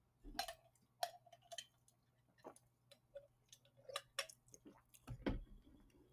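Faint, irregular clicks and ticks of a computer mouse, its scroll wheel turning and buttons pressed.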